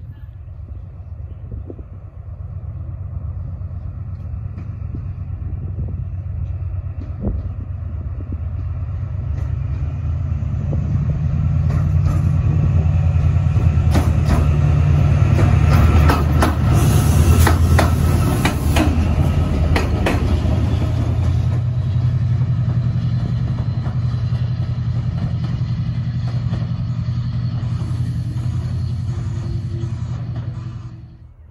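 Pair of Class 68 diesel locomotives with Caterpillar V16 engines running as they approach and pass close by, the engine note building to its loudest in the middle. As they go past, the wheels click sharply over rail joints, with rail noise over the engines.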